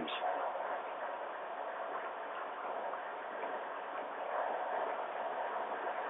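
Steady background hiss of a telephone conference line, with a faint steady hum in it and no distinct events.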